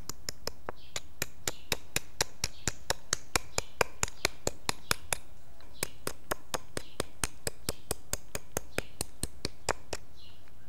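A small stone hammer tapping the edge of a blade in sharp clicks, about three to four a second, with a short pause about five seconds in. This is retouch, flaking the tang of an arrowhead into shape.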